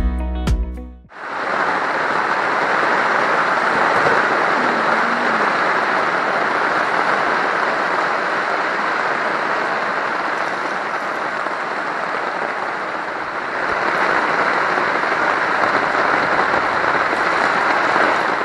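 Heavy rain falling steadily, an even loud hiss of rain on surfaces, starting as background music cuts off about a second in.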